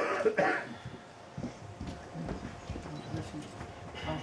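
Brief loud vocal sound right at the start, then faint murmured voices in a large room.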